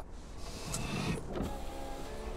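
A car's electric power window motor running with a steady hum, starting about a second and a half in, over low cabin road noise.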